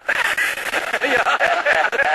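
Studio audience laughing, a dense wash of many voices with some clapping mixed in.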